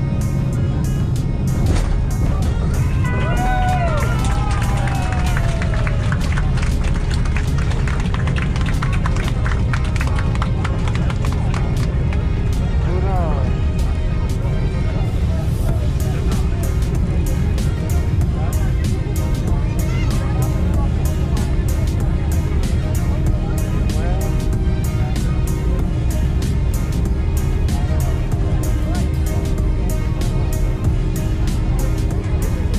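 Boeing 767-300ER airliner heard from the cabin during its landing roll on the runway: a loud, steady, deep rumble of engines and wheels that begins abruptly.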